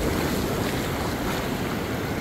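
Shallow surf washing over a sandy shore, a steady wash of water, with wind noise on the microphone.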